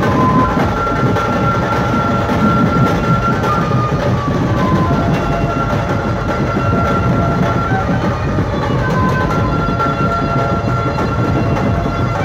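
Dhumal band music played loud through a truck-mounted horn-loudspeaker rig: long held high notes over a dense, heavy low end, without a break.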